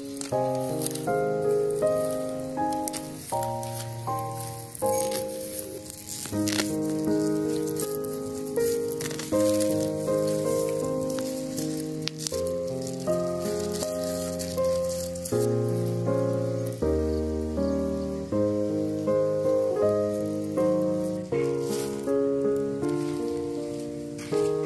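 Instrumental background music: a melody of short struck notes, about two a second, over held low notes.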